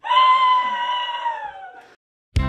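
A person's long, high-pitched wail: one held note that slowly falls in pitch and fades out near the end.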